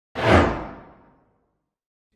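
A single whoosh sound effect of an intro logo animation: it starts sharply, peaks almost at once and fades away over about a second, the high end dying first.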